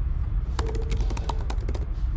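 Typing on a computer keyboard: a quick run of key clicks starting about half a second in, over a steady low hum.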